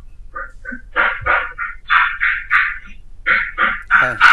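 Speech: a student talking in quick syllables, thin-sounding.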